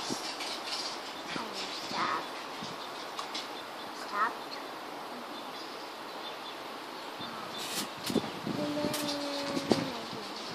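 Steady outdoor background hiss with a few short chirps, like birdsong, about two and four seconds in, then some light clicks and a brief hum near the end.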